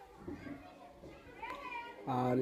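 Faint background voices, short snatches of distant talk.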